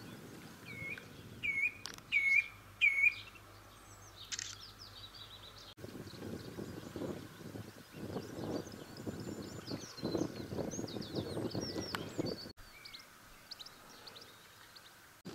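Wild birds calling outdoors: four loud, sharp calls in quick succession in the first three seconds, then faint high twittering from small birds over a gusty low rumble of wind on the microphone. There are abrupt cuts in the sound about halfway through and near the end.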